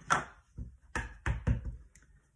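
A clear acrylic-block rubber stamp tapped onto a black ink pad to ink it: a sharp plastic knock at the start, then three quick knocks about a second in.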